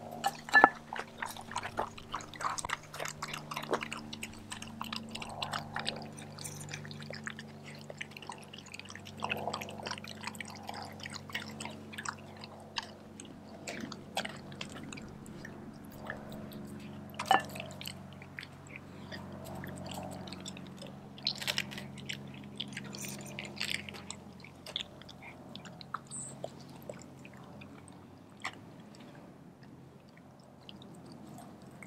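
German shepherd mix dog eating raw beef liver and goat milk kefir from a glass bowl: wet, irregular chewing, lapping and mouth smacks, with an occasional sharper click.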